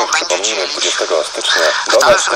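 Speech only: a man talking in Polish on a radio talk broadcast.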